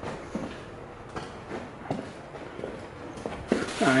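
A few soft footsteps and scuffs on a concrete shop floor, spaced irregularly, with faint handling knocks.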